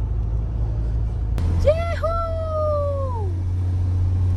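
Steady low rumble of a car's engine and tyres heard from inside the cabin while climbing a mountain road. About a second and a half in, a woman gives a long, high drawn-out exclamation that falls away at the end.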